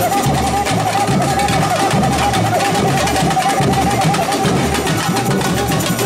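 Samba percussion band (bateria) playing in the street: surdo bass drums keeping a steady beat under snare and other drums, with a held, wavering high note running above them.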